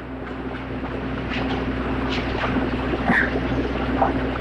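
Steady low mains hum and hiss of a lecture-hall cassette recording between sentences, slowly rising in level, with a few faint clicks.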